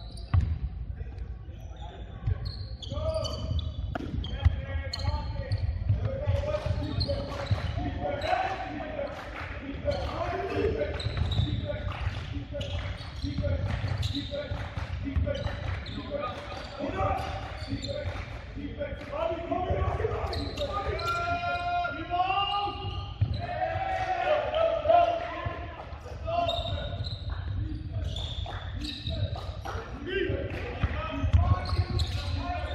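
Basketball being bounced and dribbled on a hardwood gym floor during play, with players and spectators calling out indistinctly, all echoing in a large gym.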